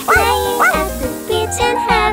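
A cartoon puppy barking in short calls, two of them in the first second, over children's song music with a steady beat.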